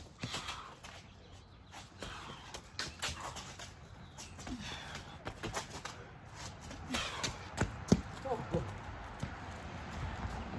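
Athletic shoes striking and scuffing on a paved driveway during sprint starts and sharp cuts: irregular quick footfalls, with one sharp strike a little before eight seconds.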